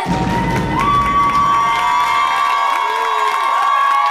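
Cheering and shouting break out as a carnival dance song ends, with one long steady high note held underneath.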